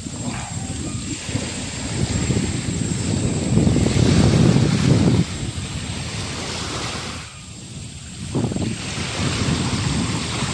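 Wind buffeting the microphone in uneven gusts, a low rumbling noise. It eases for about a second around seven seconds in, then picks up again.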